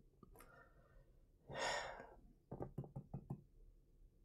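A man's quiet sigh, one breathy exhale about a second and a half in, followed by a quick run of soft clicks.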